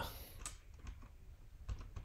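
A handful of faint, irregular clicks from computer keyboard keys being pressed.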